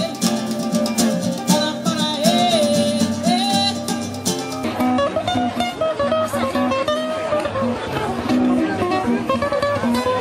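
Live Brazilian music: in the first half a band with drum kit and cymbals plays under a melody line; just before the midpoint it cuts abruptly to two nylon-string classical guitars playing together, plucked without drums.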